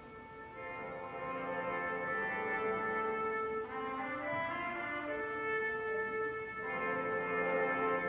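Recorded orchestral music fading in and swelling: held chords with brass prominent, the harmony shifting a few times.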